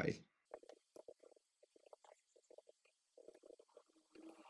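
Faint computer keyboard typing: quick, uneven runs of keystrokes.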